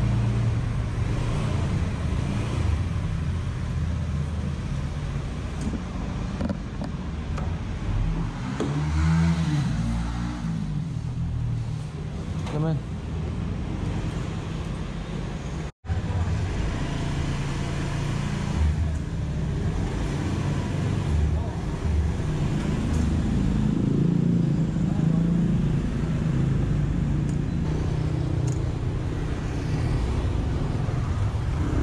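Honda motor scooter's small engine running at low speed, a steady low note with a brief rise in pitch about a third of the way in. The sound drops out for a split second about halfway.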